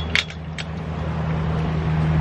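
Metal clinks of a chain-link gate latch being worked open in the first half-second, over a steady low motor hum that grows slowly louder.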